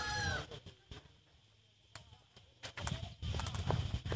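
A rooster's crow trailing off at the start, then a short lull followed by scattered sharp knocks over a low rumble of wind on the microphone.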